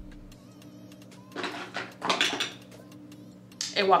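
A few quick hissing spritzes of a pump-bottle makeup setting spray misted over the face, followed by a woman starting to speak near the end.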